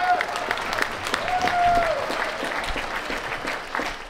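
A street crowd applauding, a dense patter of many hands clapping, with a voice from the crowd calling out in one long held call partway through.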